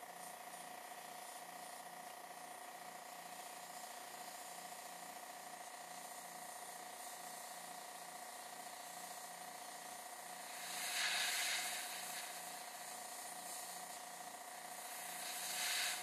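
Airbrush spraying paint, a hiss of air that swells about ten seconds in for a couple of seconds and rises again near the end.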